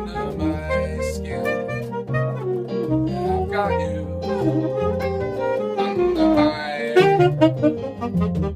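Saxophone playing a jazz solo line over electric keyboard chords and bass notes.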